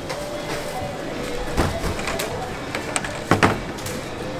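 Supermarket checkout ambience: a steady store background with faint music and distant voices, broken by a few sharp clicks and knocks of groceries being handled at the register, the loudest pair about three and a half seconds in.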